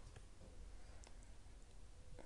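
Near silence with a few faint computer mouse clicks, two of them close together about a second in, as items in a settings window are selected.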